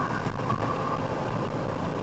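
Steady engine and road noise heard from inside the cabin of a car driving at moderate speed.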